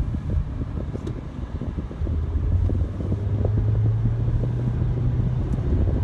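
Car cabin noise while driving: a low road rumble and engine hum, with a steady low drone through the middle.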